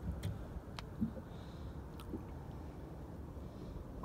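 A steady low rumble with a few faint, sharp clicks as a small largemouth bass is handled and the lure worked free of its mouth.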